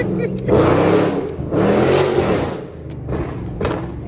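2019 Dodge Charger R/T's 5.7-litre HEMI V8 accelerating hard, its pitch rising and falling in swells as it revs through the gears. Sharp pops and crackles come from the exhaust.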